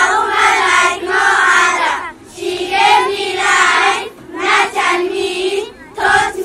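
A group of schoolchildren singing together in unison, in phrases broken by short pauses.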